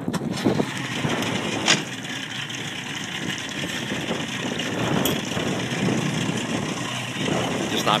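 Outboard motor running as the boat moves off slowly towing a tube, a steady hum that builds a little partway through.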